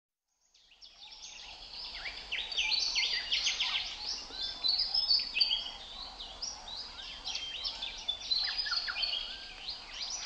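Chorus of many songbirds, with dense overlapping chirps and whistles that fade in from silence over the first two seconds and then carry on steadily.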